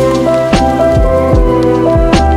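Lo-fi hip-hop track: mellow held keyboard chords over a soft, evenly paced drum beat, with a steady hiss beneath.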